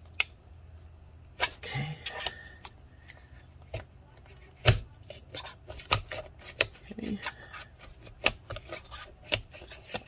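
A thin metal blade working under a laptop battery's adhesive, scraping with irregular sharp clicks against the cells and the aluminium case as it cuts through the glue. The loudest clicks come about halfway through and again a second later.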